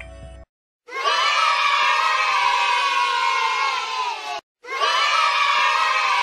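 A group of children cheering and shouting together, heard twice in a row. Each burst lasts about three and a half seconds, with a short break between them.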